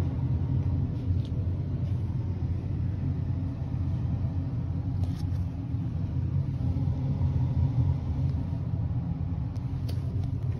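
A steady low rumble, with a few faint short rustles or taps about a second in and again about five seconds in.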